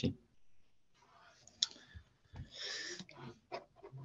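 Mostly quiet, with a few faint sharp clicks and a short soft breath at the microphone in the pause between spoken phrases.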